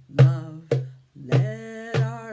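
Music: a song with a singing voice and instrumental accompaniment, in short notes that start sharply about every half second.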